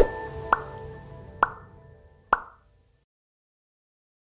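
Closing notes of a TV channel's end-card jingle: three short, sharp notes about a second apart, each ringing briefly, dying away and ending about two and a half seconds in.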